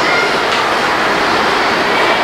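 Loud, steady rushing hiss that spreads across the whole pitch range, with no words and no separate knocks or strokes.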